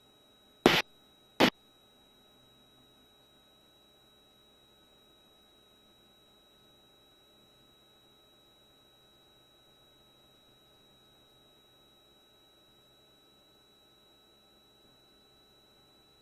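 Near silence on the cockpit intercom feed, with a faint steady high-pitched tone. Two short, loud bursts of noise come less than a second apart, about a second in.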